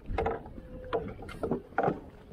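Rope pilot ladder with wooden steps knocking against a ship's steel hull and creaking as someone climbs it: four irregular knocks and a brief squeak between the first two.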